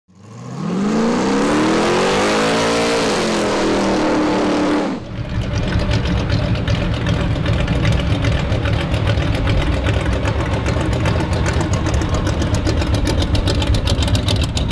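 An engine revving up, its pitch rising over about three seconds, then holding and cutting off suddenly about five seconds in. Then the 429 big-block Ford V8 of a 1949 Ford F1 pickup runs with a steady low, pulsing rumble as the truck drives slowly up and past.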